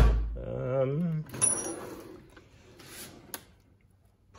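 Steel tool chest drawers being worked: one shuts with a heavy thud at the start, then another slides on its runners with a brief metallic ring and a couple of light clicks.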